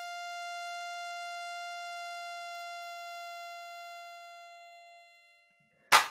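Synthesised mosquito whine from mosquito.js, a Web Audio oscillator whose volume is driven up and down by a random 'Mosquite Engine' on its gain node. It is one high, buzzing tone that holds steady for about three seconds, then fades away. A sharp click comes right at the end.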